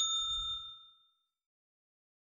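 Notification-bell 'ding' sound effect of a subscribe-button animation, its bright multi-pitched ring fading out within about a second.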